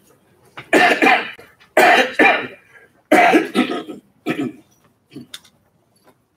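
A man coughing repeatedly: a fit of several loud, harsh coughs over about four seconds, then a softer one.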